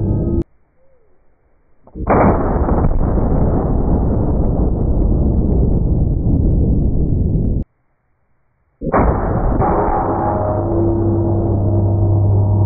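Slowed-down gunshots from a double-barrel .500 Nitro Express rifle, each a deep, drawn-out boom. The first, with both barrels fired together, starts suddenly about two seconds in and lasts over five seconds before cutting off. After a second of silence, a single-barrel shot booms from about nine seconds in.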